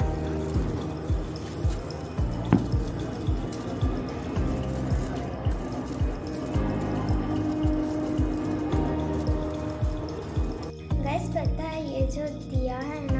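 Background music with a steady beat laid over the hiss and crackle of a burning handheld sparkler. About eleven seconds in the hiss stops and a girl's voice comes in over the music.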